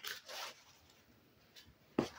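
Handling noise as a card deck is brought out: a short rustle near the start, then near silence, ending with a sharp click.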